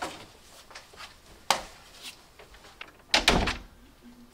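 Knocks and thuds from a wooden panelled closet door: a sharp knock about a second and a half in, then a louder cluster of bangs and rattles a little after three seconds.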